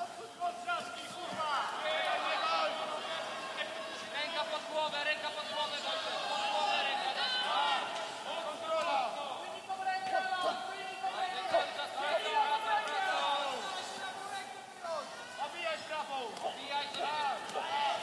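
Several voices shouting and calling out over one another without a break, from people around the cage during the fighters' ground exchange.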